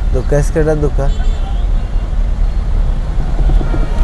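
Steady low engine and road rumble inside the cabin of a car driving in traffic.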